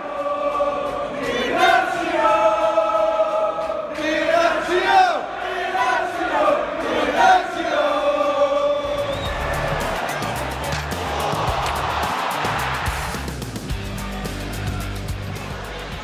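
A voice singing a chant in long held notes for about the first eight seconds, then background music with a steady beat over crowd noise.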